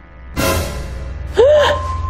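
A sudden loud dramatic hit with a lingering low boom about a third of a second in, over background music. About a second later comes a woman's short startled gasp, an 'oh' that rises and falls in pitch.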